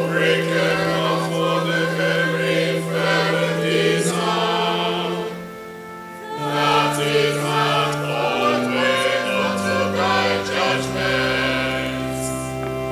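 Choir singing a psalm to Anglican chant, with organ chords held underneath. The chord changes every second or two, and there is a brief pause about halfway through between verses.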